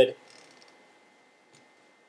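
Faint rubbing of a rag wiping out the inside of a bicycle wheel hub for about half a second, then near silence broken by one small click.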